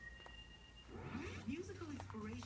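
Low room hum with a short, faint high beep in the first second, then faint, indistinct speech in the second half.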